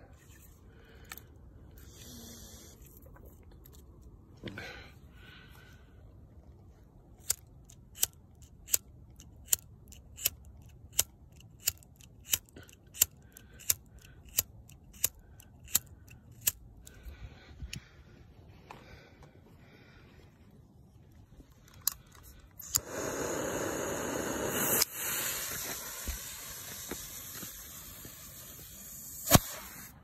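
A lighter struck over and over, about two clicks a second for some ten seconds, as it is used to light a homemade black-powder bottle rocket's fuse. Then comes a loud hiss of about six seconds as the fuse and rocket motor burn and the rocket lifts off, and a single sharp bang near the end as it bursts.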